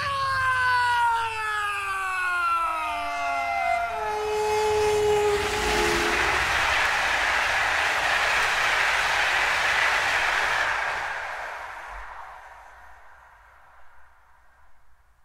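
Train sound effect on a vinyl LP: a train horn of several tones whose pitch falls steadily as it passes, then the rushing rumble of the train, which fades out over the last few seconds.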